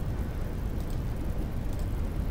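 Steady low rumble and hiss of background noise on a desk microphone, with a few faint clicks about a second in.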